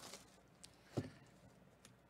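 Faint handling of a cardboard box as its plastic shrink wrap is pulled off: light crinkling, with a soft click at the start and a sharper click about a second in.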